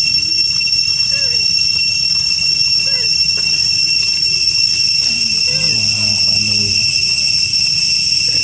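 Steady, high-pitched drone of insects, loud and unbroken, with faint voices murmuring beneath it.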